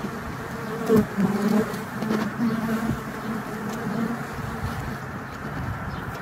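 Honey bees buzzing at a hive entrance: a steady hum of many bees, with single bees buzzing close by now and then, the loudest about a second in.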